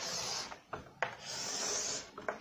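Chalk drawn across a chalkboard in two scratchy strokes. The first is short; the second starts with a sharp tap of the chalk about a second in and lasts about a second.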